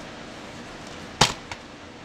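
A sharp, loud knock of something hard set down on a table, followed about a third of a second later by a lighter second knock.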